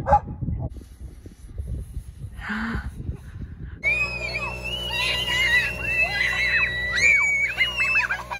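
Faint outdoor rumble and a sigh, then, after a cut about four seconds in, children shrieking and squealing as they ride a snow tube down a sledding run, over steady background music.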